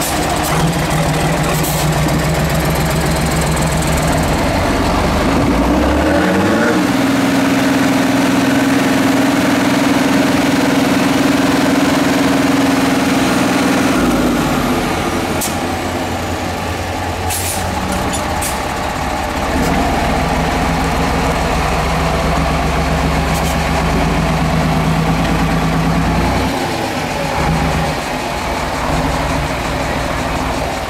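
Steyr 6x6 trial truck's diesel engine pulling under load at crawling speed. It revs up to a higher, steady pitch about six seconds in and holds it for about eight seconds, drops back, then revs up again for about seven seconds before easing off near the end.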